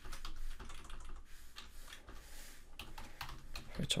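Typing on a computer keyboard: a run of quick, irregular key clicks.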